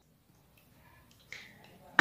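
A quiet pause with low room tone and one faint, short sound about a second and a third in.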